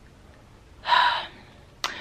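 A tired woman's single heavy, breathy breath about a second in, followed by a short mouth click near the end.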